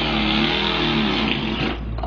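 A man imitating an engine with his voice: a buzzing, wavering engine note that cuts off just before the end, which the friends call a perfect stall.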